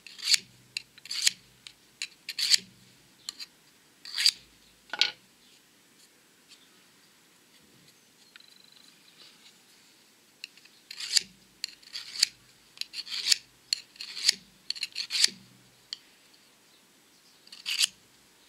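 Steel kitchen knife blade drawn again and again through a Baco Sharpix tungsten-carbide pull-through sharpener, each pass a short scraping rasp. The strokes come in two runs of roughly two a second, with a pause of about five seconds between them. The blade, unsharpened for years, is being reground by repeated passes.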